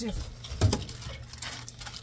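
Hands rummaging through gear and pulling out a plastic-bagged item: light scuffing and rustling with one heavier knock a little over half a second in, over a low steady hum.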